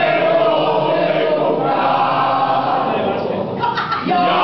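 A group of people singing a song together in unison, with no instruments heard. The singing dips briefly near the end.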